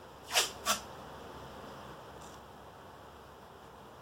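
Howie's cloth hockey tape ripping: two short, sharp rips about a third of a second apart as a strip is pulled and torn.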